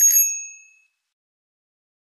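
A single bright bell ding, an editing sound effect, struck at the start and fading out within about half a second.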